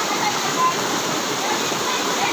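Small river cascade: water pouring steadily over rocks into a pool, a continuous even rush.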